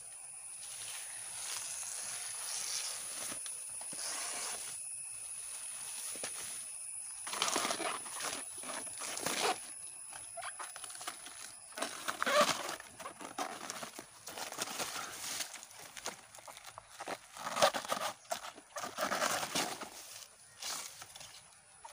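Layers of a banana pseudostem being pulled apart and peeled back by hand: irregular crisp tearing and rustling bursts of the wet fibrous sheaths, coming thick and fast from about seven seconds in.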